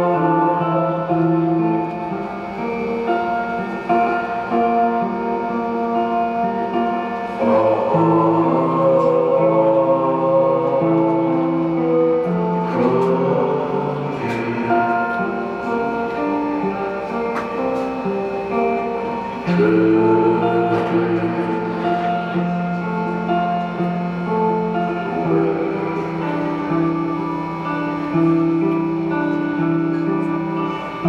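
Live band music: slow, sustained chords from electric guitar and keyboard, with a man singing into a microphone. The chords shift about a third of the way in and again about two-thirds of the way in.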